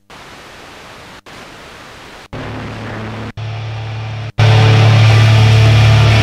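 Eton G3 FM receiver stepped up the dial between stations: steady static hiss that cuts out briefly with each tuning step, about once a second, with a low hum creeping in. About four and a half seconds in, a much louder signal comes in with a strong steady low drone.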